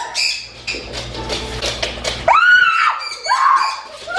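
A woman screaming: a loud, high-pitched shriek a little over two seconds in, then a shorter second cry about a second later.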